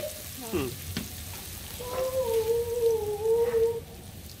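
Sliced shallots sizzling in hot oil in an aluminium pot over a wood fire. From about two seconds in, a steady pitched tone is held for about two seconds over the sizzle.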